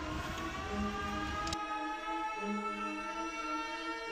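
Background music of held notes, with one tone slowly rising in pitch.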